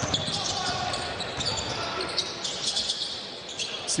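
A basketball being dribbled on a hardwood court in a large arena, its short sharp bounces over a steady murmur of crowd noise.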